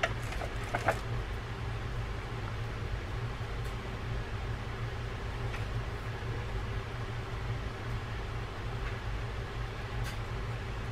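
Steady low hum with a background hiss, with a few light clicks in the first second.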